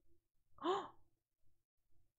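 A woman's short, breathy vocal exclamation, like a sighed or gasped "oh", about half a second in, its pitch rising then falling.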